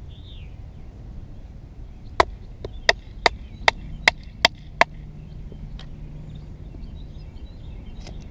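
A wooden baton striking the spine of a DW Viper bushcraft knife, driving the blade down through an upright stick to split it. There are about eight sharp knocks in quick succession, about three a second, starting about two seconds in.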